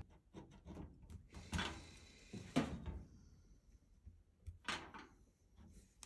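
Faint, short scratches of a felt-tip marker drawing lines on masking tape, three or four strokes, with light handling knocks.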